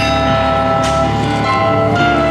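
Church bells hung in a portable frame, struck in a bell-ringing pattern over held instrumental backing. One strike just under a second in stands out.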